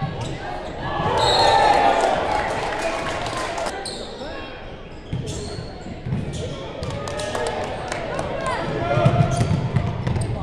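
Basketball game sounds in a gymnasium: many spectators' voices and shouts over a ball bouncing on the hardwood court. The voices swell about a second in and again near the end.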